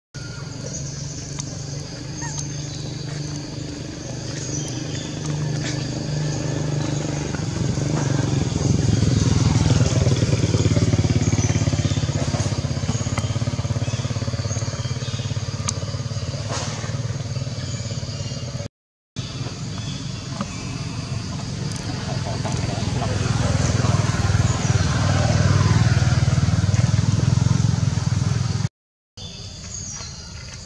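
Low engine drone of passing motor vehicles, swelling twice: loudest about a third of the way in and again near the end. The sound cuts out briefly twice.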